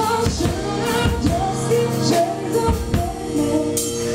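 Live song: vocals over a strummed acoustic guitar, amplified through microphones.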